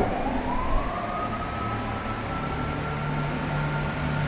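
A siren wailing: one thin tone that rises in pitch over the first second or so, then holds steady.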